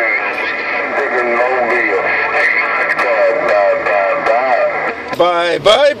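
A distant station's voice coming in over an HR2510 mobile radio's speaker, weak and buried in static with steady whistling tones, as on a long-distance 11-meter skip contact. A clear local voice cuts in near the end.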